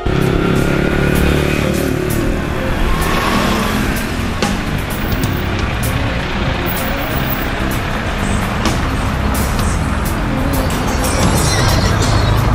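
Town street traffic: car engines running and tyres passing under a heavy low rumble, with many scattered clicks and knocks.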